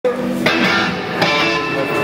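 Electric guitar chords struck three times, about half a second and then a second apart, each left ringing through an amplifier.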